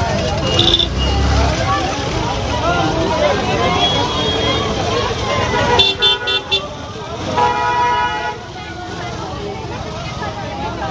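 Chatter of a crowd of people, then a vehicle horn sounding three or four quick beeps about six seconds in, followed by one longer honk about a second later.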